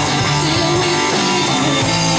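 Rock band playing live in a rehearsal room: electric bass holding low notes, electric guitar and a drum kit with steady cymbal strokes about four a second.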